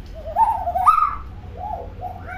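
Common hill myna calling. A wavering, warbling note rises in steps over about a second, loudest near its top. A shorter, quieter note follows near the end.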